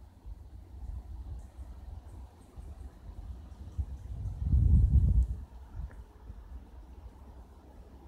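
Wind buffeting a phone's microphone: a fluctuating low rumble with a stronger gust about halfway through.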